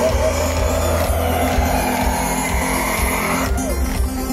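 Live pop music from a band's set played through the festival PA and heard from within the crowd. An electronic sweep rises steadily in pitch as a build-up and breaks off about three and a half seconds in.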